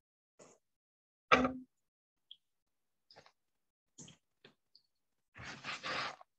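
Mouth sounds of a person chewing a piece of soft goat's cheese: scattered small clicks and smacks, with one louder knock about a second and a half in and a short breathy rush near the end.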